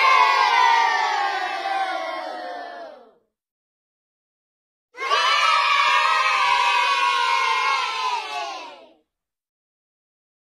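A group of children booing together, the boo sliding down in pitch and fading out about three seconds in. After a short silence, a group of children cheering for about four seconds, dying away at the end.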